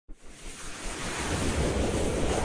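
Intro sound effect for an animated logo: a rushing whoosh of noise that swells steadily louder over the two seconds, with a low rumble underneath.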